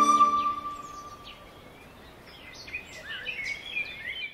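Music fades out in the first second or so, leaving faint outdoor ambience. From about a second and a half in, birds chirp and call, more busily toward the end.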